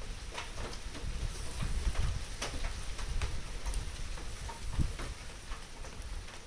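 Firewood burning under a kettle and a pot, with scattered crackles and pops, against the steady patter of rain.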